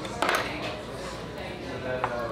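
Steel cutlery clinking sharply against a plate about a quarter second in as steak is cut with knife and fork, over a murmur of voices.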